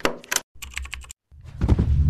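Animated-intro sound effects: a quick run of sharp clicks like keyboard typing, then a heavy low rumbling swell starting a little past halfway that carries on past the end.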